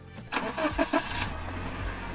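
Car engine-start sound effect: a few loud bursts of cranking about half a second in, then the engine running with a steady low rumble.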